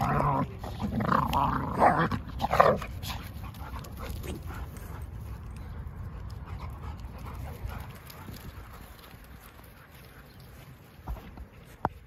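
Dogs growling as they wrestle in rough play, several loud growls in the first three seconds, then only faint outdoor background.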